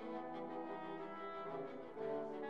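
Quiet orchestral background music with held brass notes, the chord changing near the end.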